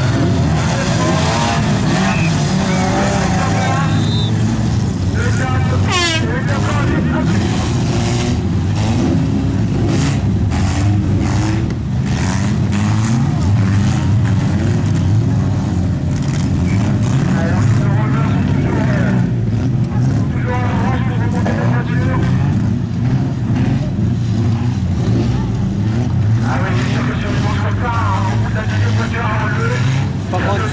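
Several stock-car engines running loudly around a dirt track, a continuous low drone with rising and falling revs, over voices from the crowd close by.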